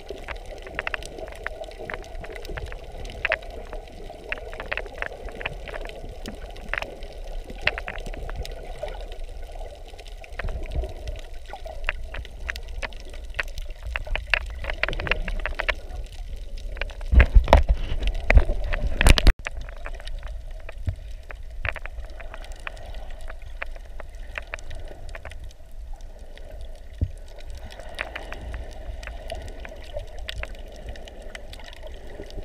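Underwater sound picked up by a camera beneath the surface over a reef: a steady low rush of moving water with many scattered sharp crackles and clicks. About 17 seconds in, a louder low rumbling surge builds, then cuts off suddenly a couple of seconds later.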